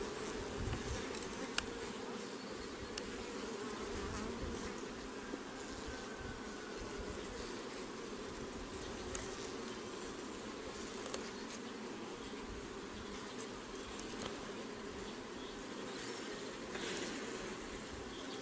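Carniolan honeybees from an open hive buzzing in a steady hum, with a few light clicks as the wooden frames are handled.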